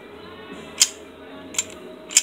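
A semi-automatic pistol's slide being worked by hand: one sharp metallic click about a second in and a fainter click near the end, over steady background music.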